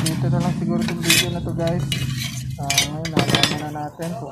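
Sheet-steel and magnet parts of a dismantled microwave-oven magnetron clinking and knocking together as they are handled, with a few sharp clinks.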